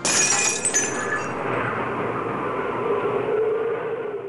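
A glass-shattering sound effect: a sudden crash cuts in, with bright tinkling shards over the first second, then a dense noisy rush that carries on.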